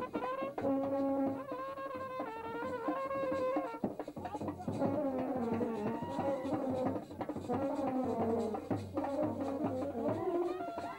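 Brass band playing a melody of held notes that step from pitch to pitch, with drums beneath and crowd voices mixed in.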